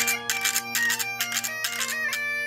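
Galician gaita (bagpipe) playing a lively tune over a steady drone, accompanied by scallop shells rubbed and struck together in a regular rhythm of about three strokes a second.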